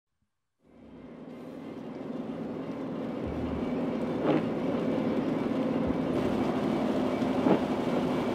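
A car driving on a wet road, heard from inside the cabin: a steady engine hum and road noise that fades in from silence and grows louder over the first few seconds, with two brief knocks.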